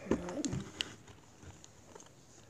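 A dove cooing briefly in the first half second, followed by a couple of light clicks.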